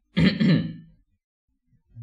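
A man clearing his throat once, a short voiced burst under a second long.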